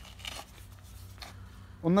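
A few faint, short scrapes and rustles from cutting and handling a banana plant's pseudostem, with a low steady background rumble. A man's voice starts near the end.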